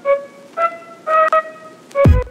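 Background electronic music in a sparse break: a few held melody notes without bass or drums, with the heavy bass and beat coming back right at the end.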